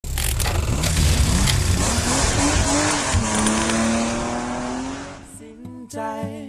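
Sound effects of a TV show's opening titles: a loud rushing noise with sharp hits, then a tone that slowly rises in pitch. It fades out about five seconds in as guitar music begins.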